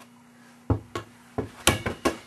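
A rubber playground ball being hit and bouncing in play: four or five sharp thumps from about two-thirds of a second in, the loudest near the end.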